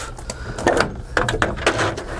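A van's bolted-on side body panel being lifted off and unhooked from the bodywork, with a few irregular knocks and scrapes as it comes away.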